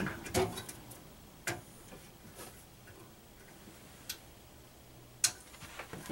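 A handful of sharp, isolated clicks and light knocks, spaced about a second apart, the loudest near the end: a power cord being plugged into a Monoprice Select Mini 3D printer and its power switch being flicked on.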